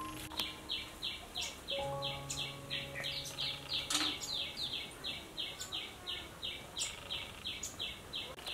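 A short high chirp repeated steadily about three times a second, the call of a small creature in the surroundings, with a few light metallic clinks of hanging cookware being handled, the loudest about four seconds in.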